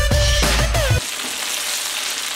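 Electronic music with a heavy bass beat cuts off abruptly about a second in. Then comes a steady hiss of hot oil sizzling in an electric deep fryer as a giant potato fry cooks in the wire basket.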